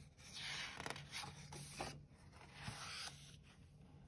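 Pages of a hardcover picture book being turned by hand: soft paper rustling and rubbing in two swells about two seconds apart, with a few light taps.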